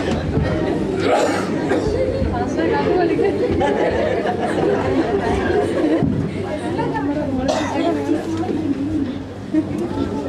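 Indistinct chatter: several people talking at once, with no clear single voice.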